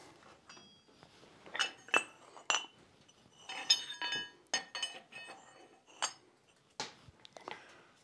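Light steel-on-steel clinks and short ringing notes, a dozen or so scattered knocks, as a freshly forged holdfast and a hardy-hole adapter are handled and set into place on an anvil.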